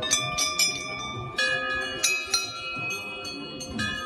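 Brass temple bells hanging in a row, struck one after another: a quick run of strikes at the start, more about a second and a half in, and another near the end, their ringing overlapping throughout.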